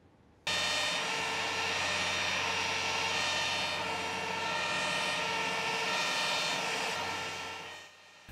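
Jet engines of a taxiing Airbus A320-family airliner, running as a steady whine with several held tones. The sound starts suddenly about half a second in and fades out near the end.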